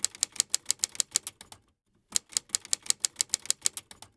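Typewriter keys striking in quick runs, about eight to ten strikes a second, as a sound effect for text being typed out on screen. It stops for about half a second midway, then starts again.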